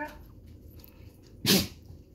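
A dog sneezing once, a short sharp burst about one and a half seconds in.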